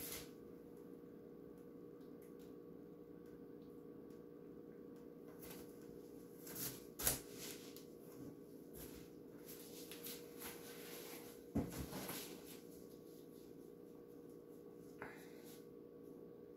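Faint steady hum with a few scattered soft knocks and rustles as a paint-covered pour board is spun by hand and set down on a plastic-covered table, at about seven, twelve and fifteen seconds in.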